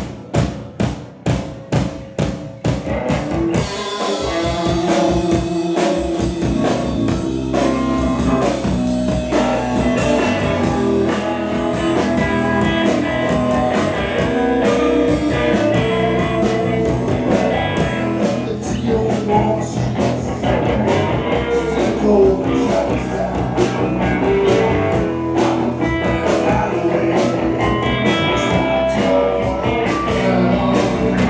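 Live rock band with a blues feel: drums alone beat out a steady rhythm for the first few seconds, then electric guitars come in and the full band plays on.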